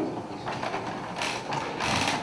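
Quiet room tone between speech, with two faint, brief rustling noises, one about a second in and one near the end.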